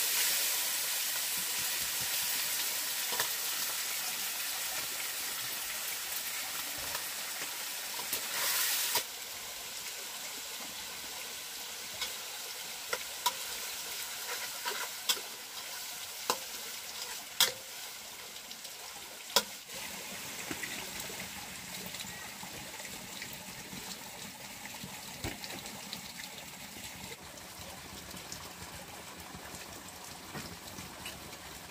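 Food sizzling in a hot pan over a wood fire: loudest as it starts and slowly dying down, with a short fresh burst of sizzle about eight seconds in. Later a metal spatula stirs the food and clinks sharply against the pan several times.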